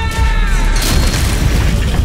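Trailer sound design: a deep boom under a held musical chord that bends down in pitch and breaks off, followed by a loud rushing noise about a second in.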